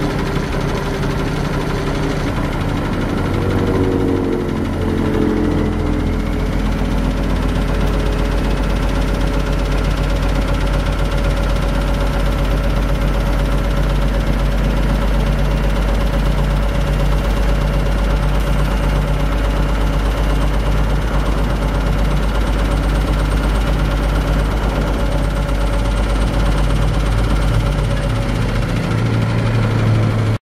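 Diesel engine of a cabover semi tractor running while the Travis end dump trailer's bed is lowered. Its pitch drops a few seconds in, then it runs steadily.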